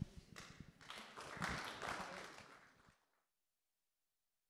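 Faint applause from a small seated audience, swelling and dying away, then the sound cuts off abruptly about three seconds in.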